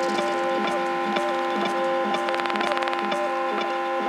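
Live electronic music from Elektron Octatrack samplers and a synthesizer: sustained synth tones held under a repeating pattern of short percussive clicks, with no kick drum, and a brief rapid ticking roll about halfway through.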